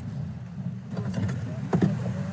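Steady low drone of a boat engine running, with a brief faint voice near the end.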